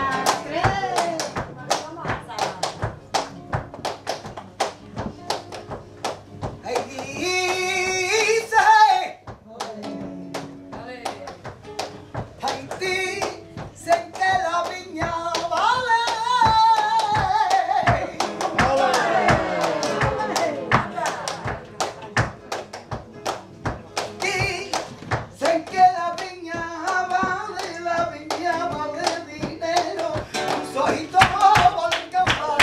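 A woman singing flamenco cante in long, wavering, ornamented phrases over steady rhythmic palmas (handclaps) from several people. The claps run throughout, and the voice comes in a short phrase about seven seconds in, a long one from about fourteen seconds, and another near the end.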